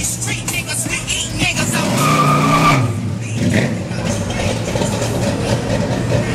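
Car engines in slow, crowded street traffic, one of them revving up and back down about two seconds in.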